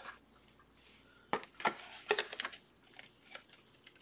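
Handling of a plastic chrome speed replica football helmet being turned over in the hands: a quick run of light clicks and knocks from just over a second in until shortly before the end.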